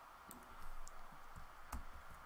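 A few faint, scattered clicks at a computer, over a low steady background hiss.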